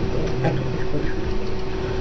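Steady background hum and hiss of a live webcam stream's microphone, with faint low voices behind it.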